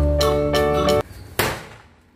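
Hand-held cylinder party popper going off once with a single sharp pop about one and a half seconds in, shooting out confetti, the bang fading quickly. Before it, background music with a mallet-percussion tune plays and then cuts off.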